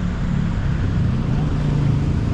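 Steady low rumble of road traffic, with a faint hum of engines running.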